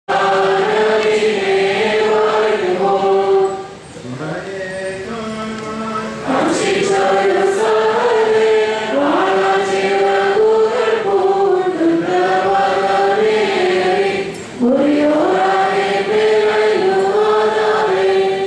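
A group of voices singing an Orthodox liturgical chant together in stepwise melodic phrases, with short breaks between phrases about four seconds in and again near fourteen and a half seconds.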